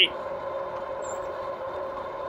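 2018 RadMini electric fat-tyre bike riding at about 22 mph on pavement: a steady two-note whine from the drive over an even hiss of tyre and wind noise.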